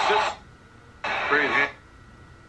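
Two short, loud vocal exclamations from a man, about a second apart, the pitch bending up and down.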